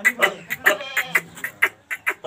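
Short, sharp animal calls in quick succession, about five a second, over a faint low hum.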